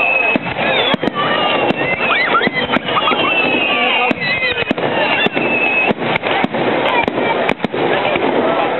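Aerial fireworks shells bursting in quick succession, a dense, unbroken run of sharp bangs and crackles.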